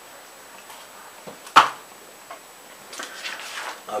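A quiet room with a single sharp knock on a tabletop about a second and a half in, then soft paper rustling near the end as a sheet of paper is handled.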